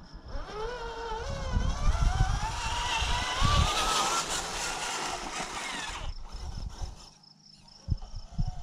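Electric motor and gear drive of an RC scale Ford Bronco crawler whining as it drives past towing a trailer, rising in pitch as it speeds up and stopping about six seconds in.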